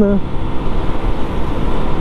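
Steady rush of wind and road noise from a Honda Biz 100 moving along the road, with its small engine running underneath.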